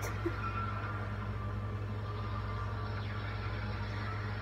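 A steady low hum with an even background of room noise.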